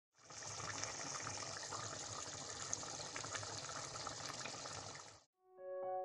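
Tomato and palm-oil stew sizzling and bubbling in a pot, a steady crackling hiss that cuts off abruptly about five seconds in. Piano music begins just before the end.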